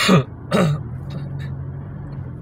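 A person inside a moving car clears their throat twice in quick succession: one burst right at the start and a second about half a second later. After that only the car's steady low engine and cabin drone is heard.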